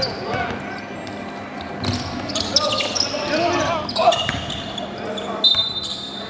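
Voices chattering in a gymnasium, with a basketball bouncing on the hardwood court a few times in sharp knocks.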